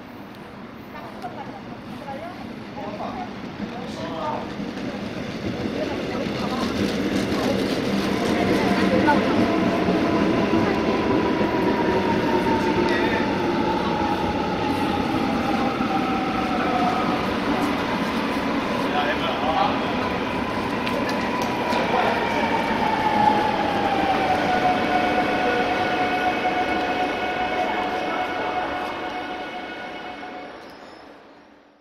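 Electric commuter train (EMU) pulling into the platform: a swelling rumble of wheels on rail as it comes in, then a motor whine that slides down in pitch as it brakes to a stop, heard twice, and steady tones near the end.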